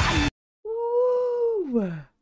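Heavy rock music with electric guitar cuts off abruptly. After a brief gap comes a woman's long, drawn-out vocal exclamation, held on one pitch and then sliding down in pitch near the end.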